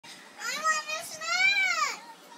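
A young girl's voice in two long, high-pitched, drawn-out vocal phrases, the second rising and then falling in pitch.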